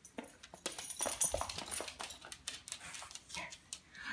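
Small Papillon dogs moving about excitedly on a hardwood floor: a rapid run of claw clicks and scrabbles, with a brief bright rattle about a second in.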